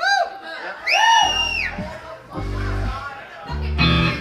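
Live rock band starting a song: two high, bending notes in the first second or so, then low electric bass guitar notes coming in about a second in and repeating in steady blocks.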